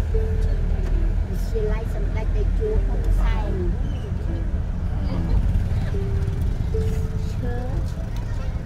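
A song with a sung melody of held and sliding notes over music, with the steady low rumble of a car in motion under it.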